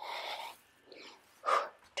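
A woman's hard, audible breathing while exerting herself in a power-yoga flow: three noisy breaths, a half-second one at the start, a faint one about a second in, and a sharper, louder one about a second and a half in.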